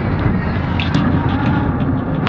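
Steady road and engine noise inside a car's cabin while driving at highway speed, a loud, even rumble.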